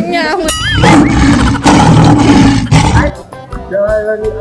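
A loud, roar-like sound effect, about two seconds long, comes in about a second in. Before it come quick whistling pitch glides, with music behind.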